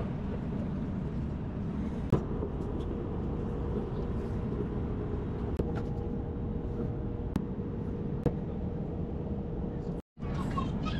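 Airliner cabin noise in flight: a steady low rumble of engines and airflow with a faint steady hum. A few light clicks and taps sound over it.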